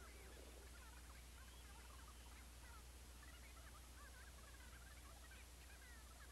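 Near silence: a steady low hum with faint, scattered short chirps.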